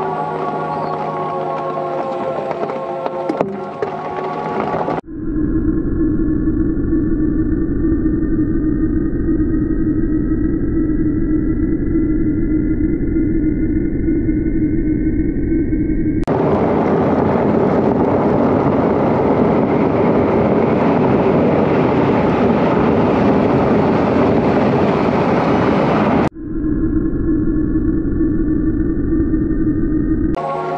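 Off-road vehicle driving on dirt and gravel tracks, engine and tyre noise in several clips joined by abrupt cuts. The engine hums steadily with a whine that rises slowly as the vehicle gathers speed, and the middle stretch is a loud, even rush of gravel and tyre noise.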